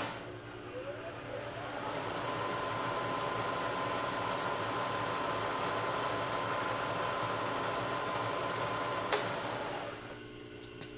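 Manual knee mill's spindle motor switched on with a click, whining up in pitch over about two seconds and then running steadily while cutting a small hole in the aluminum monocore. It is switched off with a click about nine seconds in and spins down.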